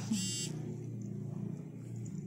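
A domestic cat purring close to the microphone: a low, steady buzz.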